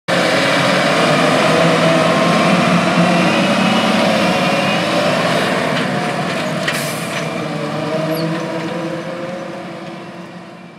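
John Deere R4045 self-propelled sprayer's diesel engine running steadily as the machine drives across the field, fading as it moves away near the end.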